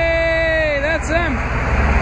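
Semi truck's air horn: one long blast that sags in pitch as it ends, then two short toots about a second in, over the low rumble of the truck pulling up.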